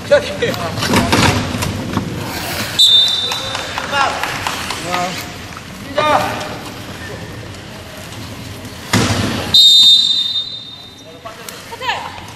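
Referee's whistle blown twice, a short blast about three seconds in and a longer one near ten seconds, over shouting players and knocks of wheelchair rugby chairs; a loud knock comes just before the second whistle.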